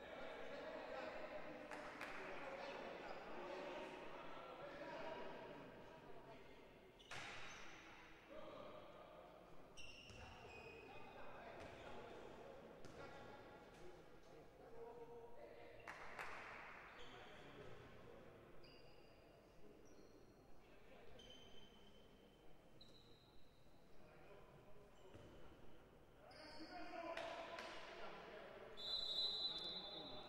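Faint court sound of an indoor handball game in a large, echoing sports hall: players' distant voices and calls, the ball bouncing now and then, and brief high squeaks in the second half. The voices grow a little louder near the end.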